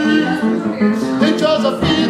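Boogie-woogie piano played live, a steady rolling instrumental passage with no sung words.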